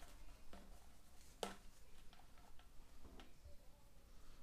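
Faint, scattered clicks and taps of plastic sink-trap parts and a rubber gasket being handled, the clearest about one and a half seconds in.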